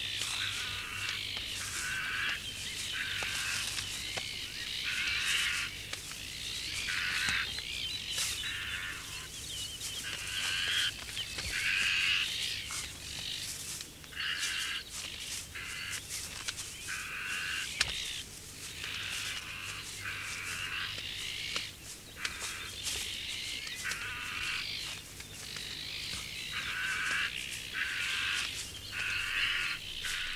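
A colony of azure-winged magpies giving harsh alarm calls over and over, several birds at once, as they mob a ladder snake climbing to their nest.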